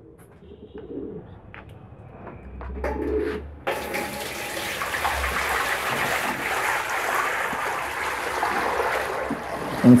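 Water poured from a plastic bucket into a shallow basin, a steady rushing splash that starts suddenly about four seconds in and runs for about six seconds. Before it, pigeons coo softly a couple of times.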